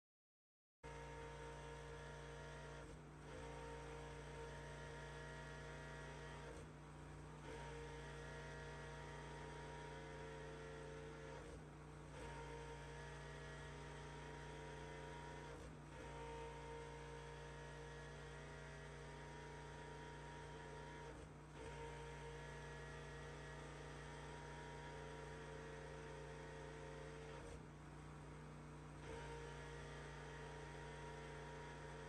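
Pressure washer running steadily, heard as a faint even hum with brief dips every four to five seconds. It starts abruptly just under a second in.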